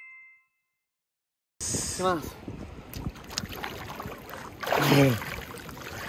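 A two-tone electronic chime fades out in the first half second. After a short silence, a river's water sloshes and splashes around a man standing in it, with two short cries falling in pitch, about two and five seconds in. The second cry is the loudest.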